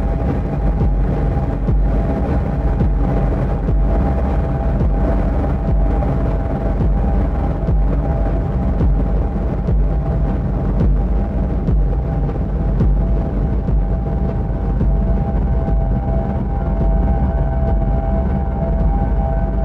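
Live electronic music from a hardware set: a thick, steady low drone with a few held higher tones over it and no clear beat, a higher tone joining near the end.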